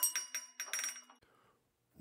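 A small bell on a door jingling as the door opens, signalling someone coming in: a quick cluster of metallic chinks with a bright ringing tone that fades out after a little over a second.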